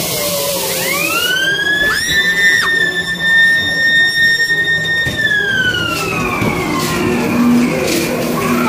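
A siren-like wail from the ghost train's sound effects: it rises over about a second, holds one steady pitch for about three seconds, then slowly slides down, with a short whooping tone over it near the start.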